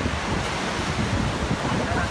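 Wind buffeting the microphone over a steady wash of sea surf against the cliffs.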